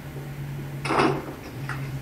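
Glass or plastic bottles clinking and rattling in a refrigerator as one is pulled out, one short clatter about a second in and a lighter tick just after, over a steady low hum.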